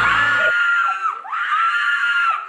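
A person screaming twice: two long, high-pitched screams of about a second each, each dropping in pitch as it ends. Music with a low bass runs under the first half second.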